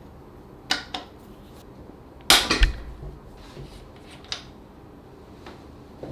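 Long-handled wrench working loose the Torx 55 plug on the front of a Volvo B5254T exhaust VVT unit: a few sharp metallic clicks and knocks, the loudest a crack with a low thump about two and a half seconds in.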